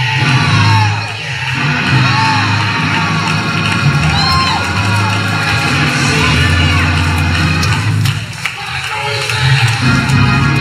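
Gospel church band music with a heavy, sustained bass line, with shouting and whooping voices rising over it.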